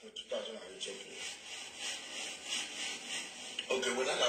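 A rhythmic scratchy rubbing noise, about three strokes a second, under low, indistinct speech.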